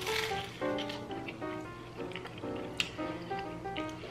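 Background music throughout. Right at the start, a crunch as a bite is taken from a piece of crisp beer-battered fried fish, followed by a few faint crunching clicks of chewing.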